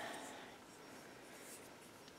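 Faint, steady room noise with no distinct sound events.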